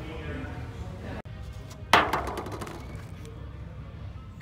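Plastic food packaging being handled. About two seconds in there is one sharp crack, then a few smaller crackles and clicks. Before that, low murmur of a quiet room.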